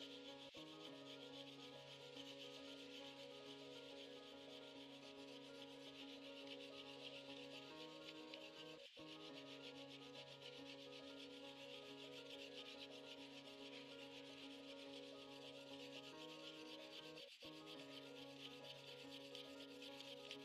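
Quiet ambient background music: sustained chords that shift every several seconds, over a steady rasping hiss.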